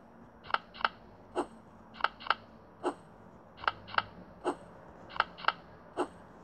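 A steady clicking rhythm from a tablet game's soundtrack: two quick clicks then a single click, the pattern repeating about every one and a half seconds.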